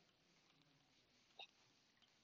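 Near silence: room tone, with one brief faint sound about one and a half seconds in.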